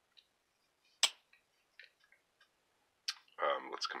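Case Slimline Trapper single-blade slipjoint pocketknife blade snapping into place with one sharp click about a second in. Fainter small clicks of the knife being handled come before and after it.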